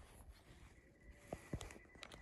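Near silence broken by a few light clicks about a second and a half in, from a phone being handled against a camera's viewfinder eyepiece, with a faint steady high tone underneath.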